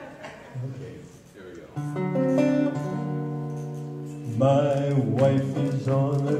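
Acoustic guitar being strummed: a chord rings out about two seconds in and sustains, then more chords are strummed near the end.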